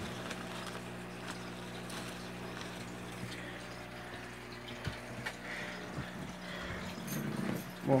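Steady low hum with a faint trickle of water from a tank filter, with a few soft knocks and leaf rustles as a green iguana is lifted down from among plants.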